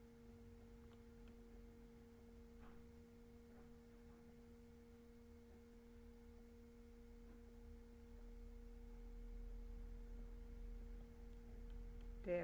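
Near silence with a faint steady hum of two pure tones, one low and one an octave above, and a low rumble that swells in the second half.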